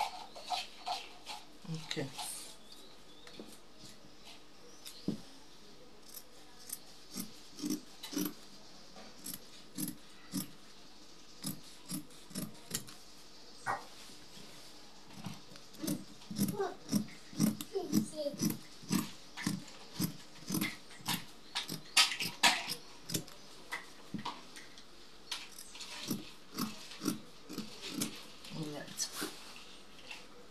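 Fabric scissors cutting through mikado fabric: a run of short snips, scattered at first, then coming quickly and evenly, a couple a second and louder, from about halfway through.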